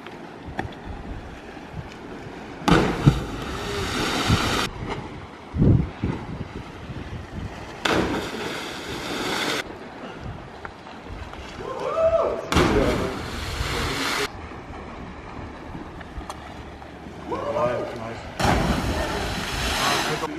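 Cliff jumpers hitting the sea one after another: four loud splashes a few seconds apart, each lasting a second or two. Short shouts from onlookers come between them.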